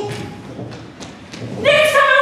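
A handful of thuds and knocks on a stage floor, from actors running and scuffling. About a second and a half in, a voice enters on a held note.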